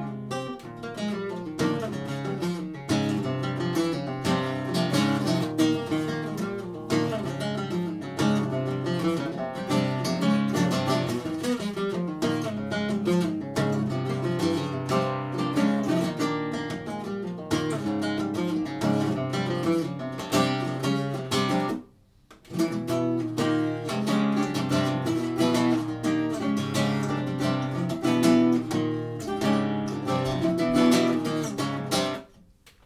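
Nylon-string acoustic guitar played solo: quick strummed chords and picked runs. The playing stops for about half a second near 22 seconds in, then resumes.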